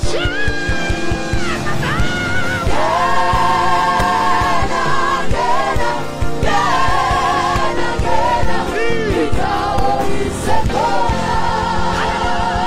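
Live gospel praise singing: several voices sing long, wavering notes in harmony into microphones, over a band with a steady drum beat and bass.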